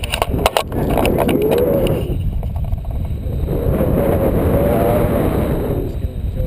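Airflow buffeting an action camera's microphone in flight on a tandem paraglider: a steady low rumbling roar, with a quick run of clicks in the first second and a faint wavering tone over the rumble in the middle.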